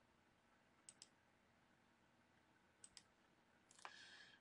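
Near silence with faint computer mouse clicks: a quick pair about a second in, another pair near three seconds in, and a single click just before the end.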